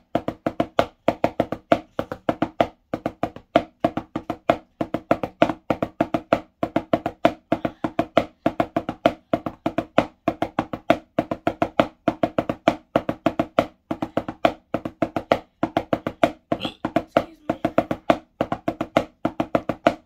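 Wooden drumsticks on a drum practice pad playing five-stroke rolls over and over: quick clusters of strokes separated by brief gaps, with a faint ring from the pad.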